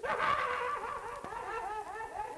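A man's high-pitched, wordless giggling: a rapid run of arching notes about six a second, loudest at the start.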